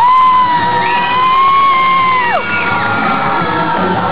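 Dance music playing, with a long high voice held for about two and a half seconds that slides up at the start and drops off at the end; a second high voice joins about a second in.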